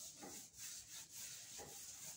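A paintbrush dragged in sweeping strokes through thick wet paint on a painting panel, a faint bristly scrubbing hiss with brief dips between strokes about every half second.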